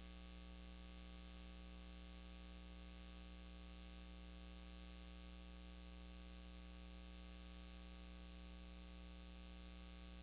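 Faint, steady electrical hum with hiss, unchanging throughout.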